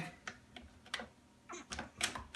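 A few faint clicks and knocks as a Blackmagic URSA camera is worked onto a Sony VCT-14 tripod base plate, the parts knocking together without locking in: one point on the plate sits too low for the other to engage.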